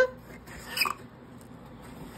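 Corrugated cardboard pizza box lid being lifted open, with one short cardboard squeak just under a second in.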